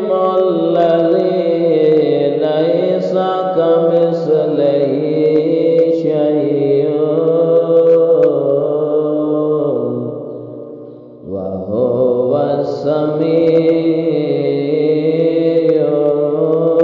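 A voice chanting an Arabic Ramadan supplication (dua) in a slow, melodic recitation, with a brief break about ten seconds in.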